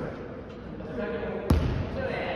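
A volleyball bouncing once, hard, on a wooden gym floor about three-quarters of the way in, the thud echoing briefly in the hall.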